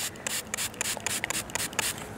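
Fingers rubbing dirt off a freshly dug 1916 Mercury silver dime close to the microphone: a quick, irregular run of dry, scratchy rubs.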